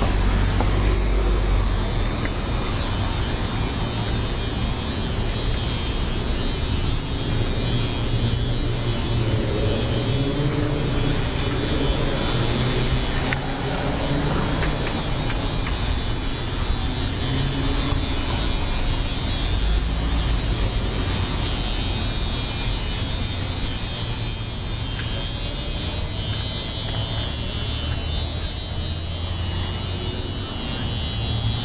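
Steady downtown street noise with a continuous low rumble, passing traffic and faint music in the background.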